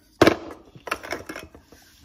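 Wooden tree-slice blocks clacking against each other and the plastic bin as they are handled: one loud clack about a quarter second in, then a few lighter clicks.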